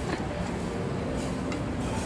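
Steady low background rumble of a restaurant dining room, with no distinct sound standing out.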